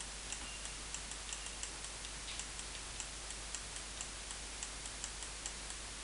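Faint, irregular light ticks of a stylus tapping and stroking a graphics tablet while an equation is handwritten, several a second, over a steady low hiss and hum.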